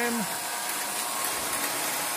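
Lionel U36B toy diesel locomotive running steadily around three-rail O27 track with a train of boxcars: an even electric motor hum and wheel rumble with a faint steady whine.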